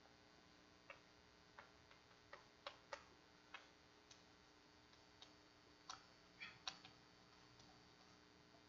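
Chalk on a blackboard as equations are written: faint, irregular taps and short scratchy strokes, about fifteen over the stretch, clustered most thickly in the middle, over a low steady room hum.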